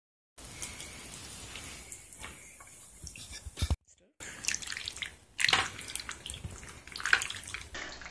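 Pasta in a creamy tomato sauce bubbling in a stainless steel skillet over the heat: a soft crackling hiss with scattered small pops, the pops becoming more frequent in the second half.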